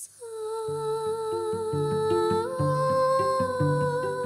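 A woman's singing voice holding one long note that steps up a tone about halfway through, over a walking line of plucked double bass notes.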